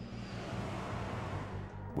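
Background music with a steady low bass, under a rushing whoosh that swells and fades away within about two seconds: an early maglev test vehicle rushing past close by.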